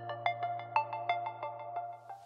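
Short musical sting: a low held drone and a steady mid tone under a quick run of short, bright notes, about three a second.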